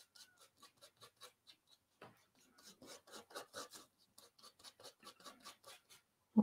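Faint, quick scraping strokes of a palette knife mixing dark red paint into green on a palette, several strokes a second.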